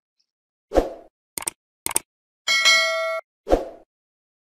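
A short end-of-video sound-effect sting: a thud, two quick clicks, a bell-like ding ringing for under a second, then a final thud.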